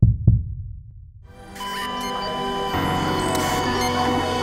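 A heartbeat sound effect: two deep thumps in quick succession that die away. About a second in, music swells in and carries on.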